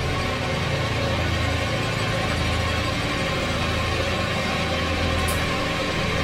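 Tense horror background music: a steady low drone under held, sustained tones.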